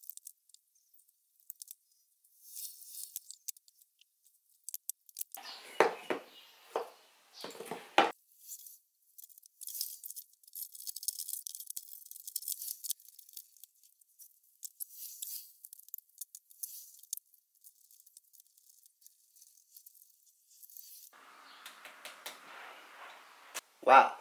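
Handling noise of a modular PC power supply and its cables being fitted into a computer case: scattered clicks, rustles and light scrapes, with a cluster of heavier knocks about six to eight seconds in.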